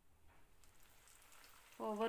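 Faint sizzling of aval (poha) vadai deep-frying in hot oil. A voice begins just before the end.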